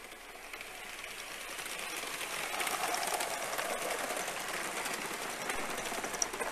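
Gauge 1 model train running past on garden track, its wheels clicking rapidly over the rail joints. The sound grows louder over the first few seconds as the coaches come closer.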